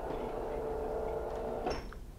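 A steady machine hum made of several tones, which stops with a click near the end.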